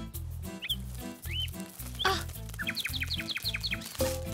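Cartoon background music with a steady, bouncing bass line. Short rising squeaky notes sound a few times, then a quick run of about nine rising chirps comes near the end.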